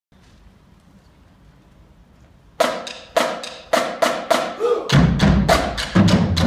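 Percussion ensemble starting up. After a faint couple of seconds, sharp drum strikes begin about two a second, and low marching bass drums join in near the end with a denser pattern.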